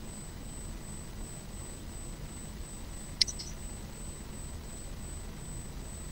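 Steady low background rumble with a faint high-pitched steady tone, and one short sharp click about three seconds in.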